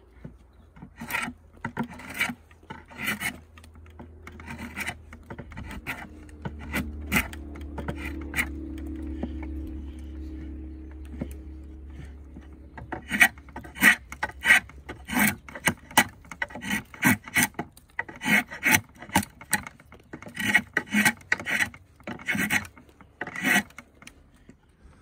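Draw knife shaving a black locust peg blank on a shave horse, in repeated pull strokes as the blank is squared. The strokes come about once a second at first, then quicker and louder, about two a second, from about halfway.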